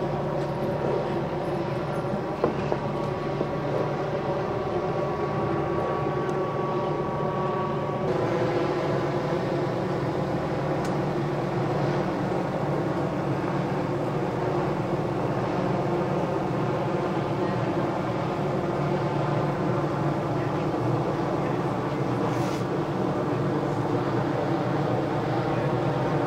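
Vehicle engines idling: a steady low drone with several held tones that shifts slightly about eight seconds in.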